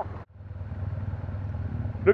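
Motorcycle engine running at a low, steady idle, after a brief dropout in the sound about a quarter second in.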